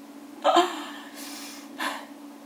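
A woman gasps sharply about half a second in, then breathes out heavily, with another quick breath near the end: an overwhelmed, excited reaction with her hands over her mouth.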